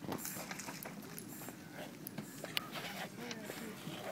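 Faint talk from people in the background, with a few scattered small clicks over a steady hiss.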